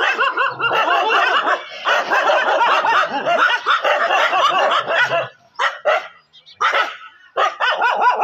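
Several dogs barking and yelping at once, a dense overlapping chorus for about five seconds, then a few separate short barks near the end.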